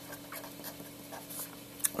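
Pen writing on paper: faint scratching strokes, with a short click near the end.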